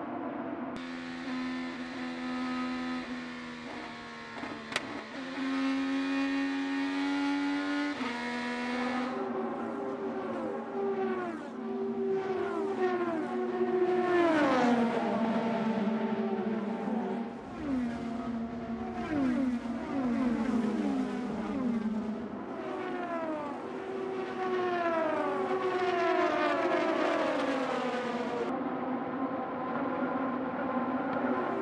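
IndyCar 2.2-litre twin-turbo V6 engines at racing speed: first one engine heard from its own car holding a steady high note for several seconds, then a pack of cars going past one after another, each engine note falling in pitch as it passes.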